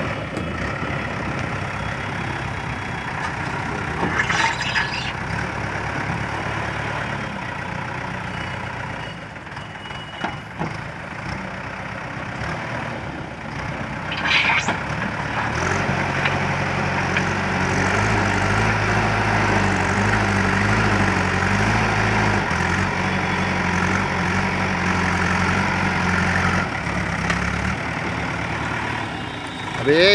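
JCB backhoe loader's diesel engine running as the machine works its front loader bucket into a pile of rubble. Around halfway through, the engine note strengthens and holds under load for about ten seconds, then drops back, with two brief high-pitched sounds earlier on.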